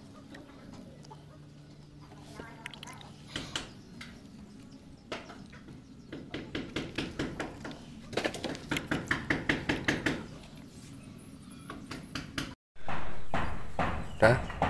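A chicken clucking in a rapid series of short calls, about four a second, over a steady low hum, with a couple of single knocks before it.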